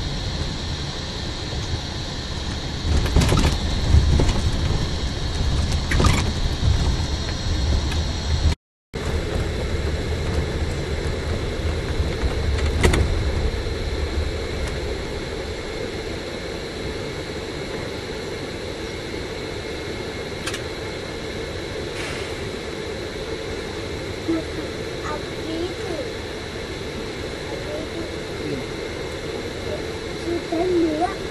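Inside a double-decker express bus: engine and road rumble with a few sharp knocks and rattles in the first half, settling to a quieter, lower running sound after about fourteen seconds as the bus crawls in queued traffic. The sound drops out completely for a moment near nine seconds.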